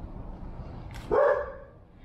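A dog gives a single short, loud bark about halfway through.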